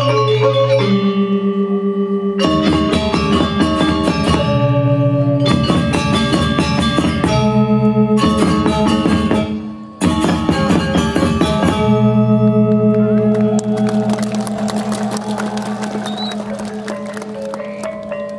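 Balinese gong kebyar gamelan playing: bronze metallophones and gongs struck together in loud passages, their tones ringing and shimmering. The sound drops briefly just before ten seconds in, comes back in full, then rings on and fades gradually toward the end.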